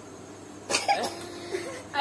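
A person coughs once, sharply, about two-thirds of a second in, followed by a short voiced sound.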